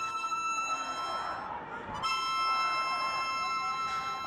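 Harmonica playing long held chords, one chord sustained and then a new one taken up about halfway through.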